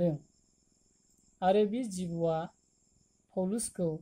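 Crickets trilling steadily, a continuous high-pitched tone that carries on through the pauses in a man's speech.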